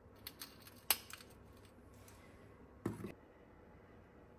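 Hand spice grinder being twisted to season food: a faint run of quick dry clicks through the first second or so, then a single dull knock about three seconds in.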